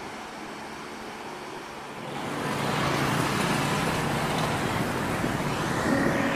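A soft, even wash of waves on a beach, then from about two seconds in the louder noise of street traffic, with motorbike and car engines passing.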